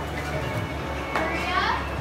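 Indistinct chatter of people in a busy shop, with one higher voice rising in pitch about a second in.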